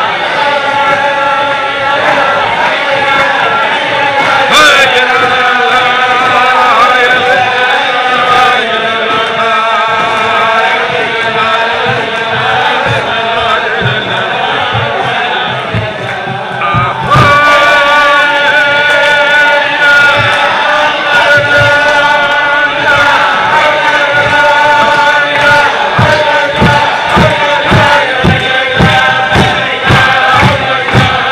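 A group of men singing a Chasidic niggun together at a farbrengen, their voices joined in one sustained melody, with a short dip about halfway through before the singing picks up again. In the last few seconds a steady beat of about two thumps a second joins the singing.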